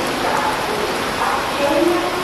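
Heavy monsoon rain pouring steadily onto a station platform and its roofing.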